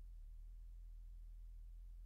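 Near silence: only a steady, unchanging low hum, with no sound of play, whistle or crowd.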